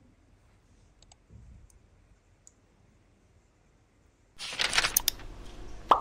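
A few faint, short clicks over near silence. Then, about four seconds in, a sudden loud rustling noise begins, with a sharp click just before the end.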